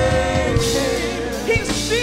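Women's voices singing a gospel praise and worship song over instrumental accompaniment, with a few drum strikes.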